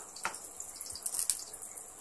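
A couple of soft clicks from small bowls being moved on a tabletop, over a steady faint hiss.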